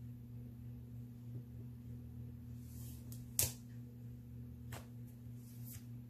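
Quiet handling of a paper sticker sheet on a planner, with one short sharp click about three and a half seconds in and a fainter one later, over a low steady hum.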